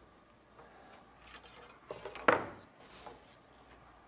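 A few light clicks and knocks of small hard parts being handled on a workbench, with one sharper clack a little over two seconds in.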